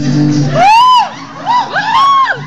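Backing music with steady low notes cuts out about half a second in, and loud whoops take over: one long yell rising and falling in pitch, then several shorter overlapping whoops near the end.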